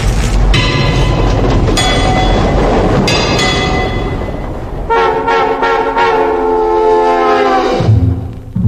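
Subway train sound effect: a running rumble with rail clatter and a few sharp clicks, then a horn sounding about five seconds in. The horn is held for about three seconds, falls slightly in pitch and cuts off abruptly.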